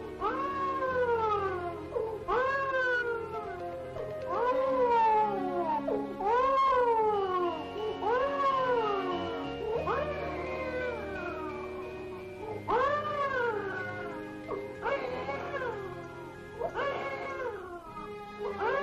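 A cat meowing over and over, about ten long drawn-out meows roughly two seconds apart, each rising then sliding down in pitch, over background music of held notes.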